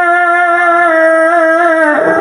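A male qari's voice in melodic Quran recitation, holding one long, slightly wavering note into a microphone; the note breaks off near the end and a new phrase begins.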